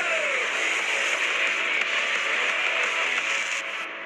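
Film sound-effect rushing noise of a super-fast run, a steady dense whoosh with a falling pitch glide near the start, with music faintly underneath. It fades out just before the end.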